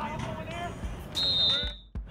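A sports whistle blown once, a short steady shrill blast a little after halfway through, over players' voices calling out on the field.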